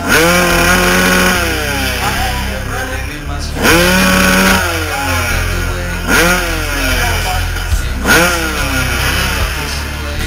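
Kawasaki dirt bike engine revved four times while standing at the start of a hillclimb. The first two revs climb quickly and hold high for about a second before dropping back. The last two are short blips about two seconds apart.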